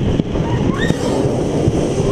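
Space Mountain roller coaster car running along its track in the dark: a loud, steady rumble and rush of noise heard from on board.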